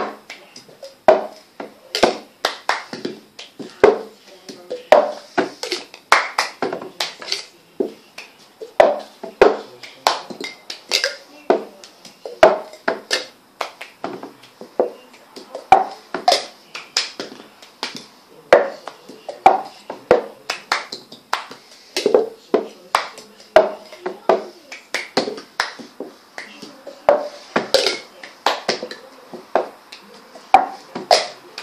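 Hand claps and cups struck, slapped and set down on a tabletop in the repeating cup-song rhythm, played with three cups. Sharp taps and claps come several a second in a looping pattern.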